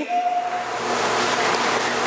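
Steady, even hiss of background noise in the room during a pause in the preaching, with no speech; a faint, brief tone sounds near the start.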